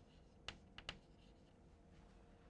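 Chalk writing on a blackboard: three short, faint taps of the chalk in the first second.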